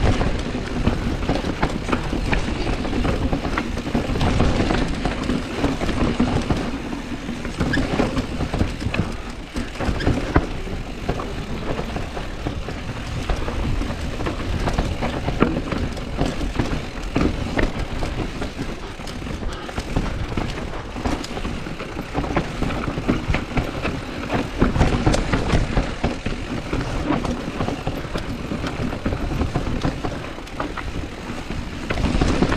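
Specialized Status full-suspension mountain bike descending a rocky forest trail at speed: a continuous rattle of knobby tyres over dirt and loose stones, dense with knocks and clatter from the bike as it runs over rocks.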